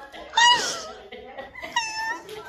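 High-pitched squealing laughter from a woman: a drawn-out squeal about half a second in and a shorter one near the end.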